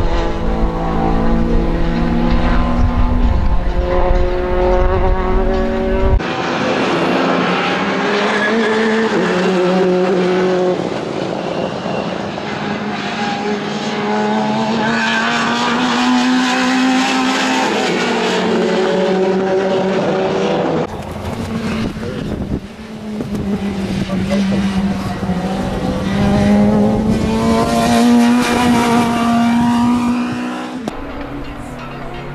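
Fiat Punto Abarth race car's engine revving hard, its pitch repeatedly rising and dropping as it accelerates and shifts through the gears on track. The sound changes abruptly about six seconds in and again about twenty-one seconds in.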